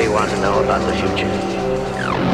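Atmospheric drum and bass music with swooping, pitch-gliding sounds over a steady bass line and sustained chords.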